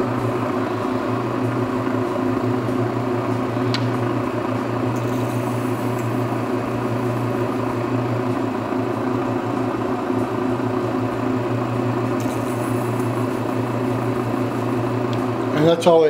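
Faceting machine's lap motor running with a steady hum while an aquamarine is ground against the diamond lap to cut the pavilion facets. A faint hiss comes and goes twice, and there is one small click about four seconds in.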